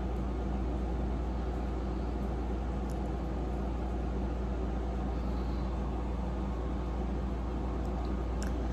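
Steady low hum with an even hiss over it, unchanging throughout: background noise with no distinct event.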